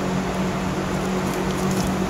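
A steady, even hiss with a low, constant hum beneath it.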